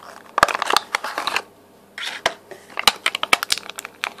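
Clear plastic packaging crackling and clicking as it is handled and opened: a run of sharp clicks and crinkles, a short pause, then a second run.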